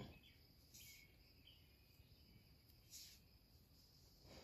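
Near silence: room tone, with a few faint, brief soft sounds.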